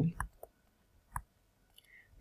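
A single sharp tap-click about a second in, from a stylus tapping the tablet screen while writing. Before it, at the very start, the tail of a spoken word.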